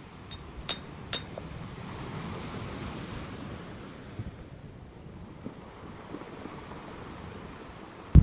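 Sea waves washing on the shore with wind on the microphone, a steady rushing noise. A few light clicks sound in the first second and a half.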